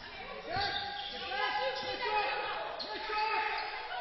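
Basketball being dribbled on a hardwood court in a large hall, with players' voices around it.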